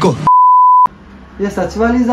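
Electronic test-card bleep: a single steady beep at one pitch lasting about half a second, starting and cutting off abruptly, between bits of speech.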